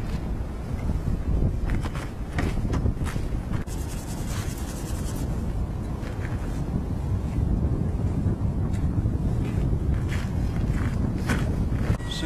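Gasoline two-stroke DLE-55 engine of a large RC model warplane running steadily, spinning its propeller, with wind noise on the microphone.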